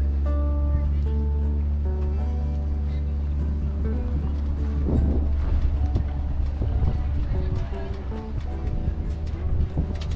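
Background music: a melody of held notes moving up and down in steps, over a steady low hum.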